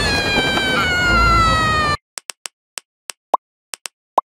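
A cartoon character's long, high-pitched scream, sliding slowly down in pitch over a noisy backing, cut off suddenly about two seconds in. Then a quick series of short pops and blips, about six, from an animated logo.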